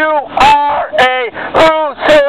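A dog barking repeatedly, short pitched barks about one every half second.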